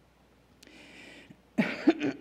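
A woman clearing her throat with a short cough into a podium microphone, about one and a half seconds in, after a faint hiss of breath.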